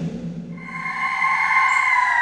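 Television theme music: a low drone dies away, then a high held tone swells in about half a second in.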